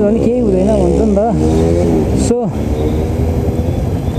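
Motorcycle engine idling with a steady low rumble amid surrounding street traffic, a voice heard over the first second or so. The bike is a Yamaha R15 V3, which has a 155 cc single-cylinder engine.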